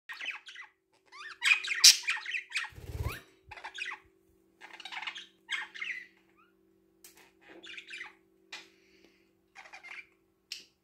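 Budgerigars chirping, warbling and squawking in short bursts, loudest about two seconds in. A brief low rumble comes about three seconds in, and a faint steady hum runs underneath.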